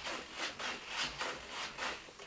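Quiet rubbing strokes, about three a second, as the control sticks of a Spektrum DX8 radio transmitter are worked back and forth to move the thrust-vectoring nozzles.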